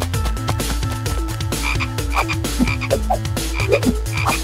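Frog croaking sound effect: a quick, steady run of repeated croaks.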